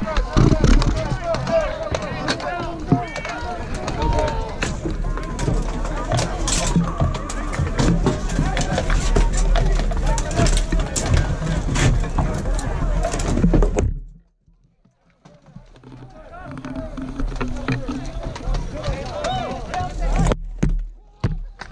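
Battle din of a large melee of armoured fighters: many voices shouting over a steady clatter of sharp knocks and cracks from weapons striking shields and armour. About fourteen seconds in the sound cuts off suddenly to near silence, and fainter voices then build back up.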